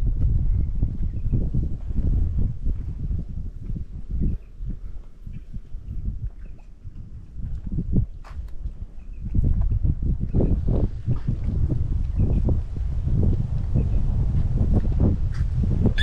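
Wind buffeting the microphone in gusts, a deep uneven rumble that eases for a few seconds in the middle and comes back strongly about nine seconds in, with a few light ticks in between.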